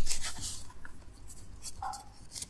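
Light rustling and scraping as a small framed picture is handled and pulled from its holder, in short scratchy strokes.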